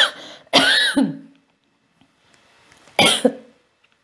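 A woman coughing. One cough comes about half a second in and another comes about three seconds in, with quiet between them.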